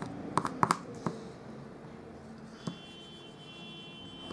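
Bone folder smoothing a glued paper strip down onto card stock, with a few light clicks of the folder and card in the first second and one more about halfway through.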